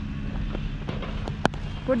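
Steady low outdoor rumble picked up by a helmet-mounted camera, with one sharp knock about a second and a half in.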